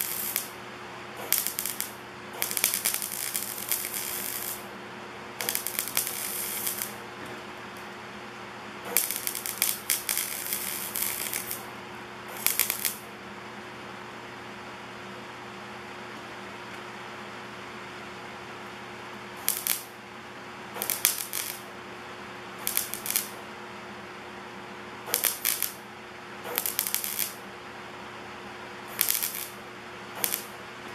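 Wire-feed (MIG) welder arc crackling and sizzling in a series of short bursts, from under a second to about three seconds each, as stitch welds are run on a thin steel coffee can. A steady low hum runs underneath, with a long pause between bursts around the middle.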